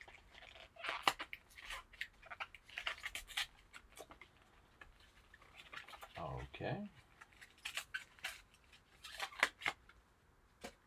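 Card-box packaging being handled and torn open by gloved hands: an irregular run of crinkling, scraping and tearing of cardboard and paper. A brief low vocal sound comes about six seconds in.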